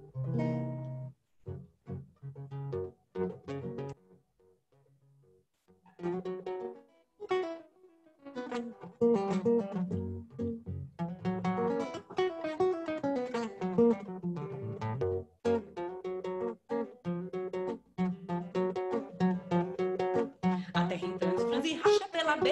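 Nylon-string classical guitar played solo as the introduction to a baião: a few sparse plucked notes, a brief pause, then a flowing fingerpicked passage with a moving bass line.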